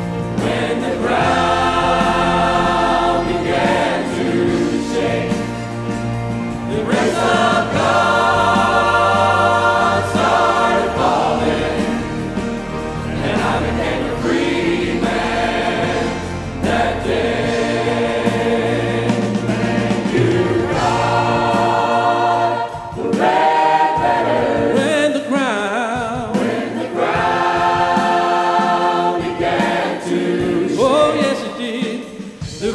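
A worship team and choir singing a congregational Christian praise song in phrases, with instrumental accompaniment. The low bass drops out about two-thirds of the way through, leaving mainly the voices.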